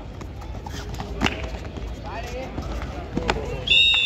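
Shouting and chatter of players and onlookers at a kabaddi match, with a few sharp slaps. Near the end, a referee's whistle is blown in one short, shrill blast.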